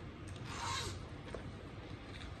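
Zipper on a small MCM accessory pouch being pulled open, one quick zip lasting about half a second, a little way in.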